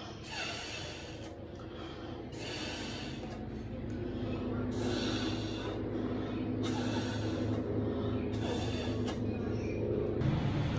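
A person's forceful breaths through a cut-off plastic bottle with a soapy sock over its end, blowing a bubble snake: short hissy breaths about every two seconds, six in all, over a steady low hum that grows louder midway.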